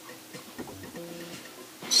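A man's voice faintly humming a low, drawn-out "mmm" in steady held stretches, a hesitation sound between sentences.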